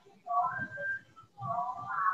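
Whiteboard marker squeaking against the board as it writes, in two squeaky stretches of stroke, with light knocks of the marker on the board.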